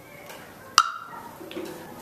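A classroom percussion instrument struck once about a second in, with a short ringing decay, over a low murmur of children in the room.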